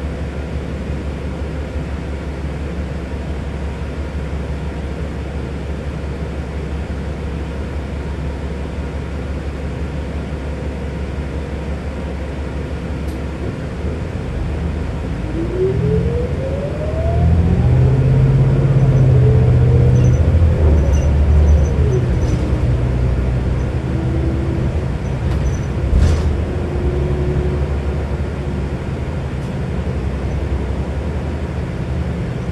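New Flyer XD60 articulated diesel bus heard from inside the cabin: a steady low engine rumble, then about fifteen seconds in the bus accelerates with a rising whine and the rumble grows louder for several seconds before easing. A single sharp click comes near the end.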